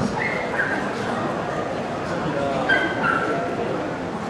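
Dogs whining with a few short, high yips, twice in quick pairs, over a steady murmur of voices.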